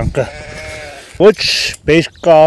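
A sheep held down for shearing bleats once, a long call lasting about a second.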